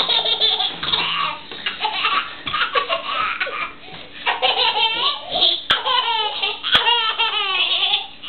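Young children laughing, a baby among them, in quick runs of high-pitched laughs with a short lull near the middle.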